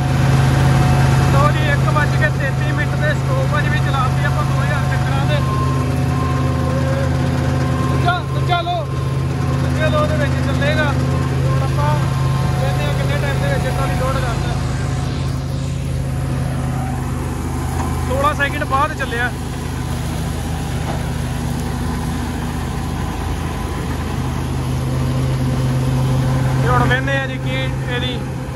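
New Holland 5620 tractor's diesel engine running steadily at working speed, powering a tractor-drawn straw reaper, with a constant deep hum.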